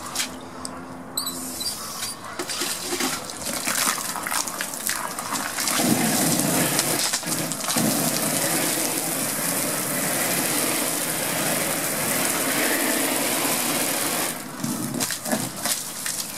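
Garden hose spraying water onto a vinyl projection screen. It splashes irregularly at first, becomes a steady, loud spray about six seconds in, and eases off a couple of seconds before the end.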